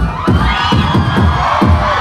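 Beatboxing through a concert PA: a quick beat of bass-drum-like mouth strokes, about three to four a second, with a brighter, higher sound swelling over the beat from about half a second in.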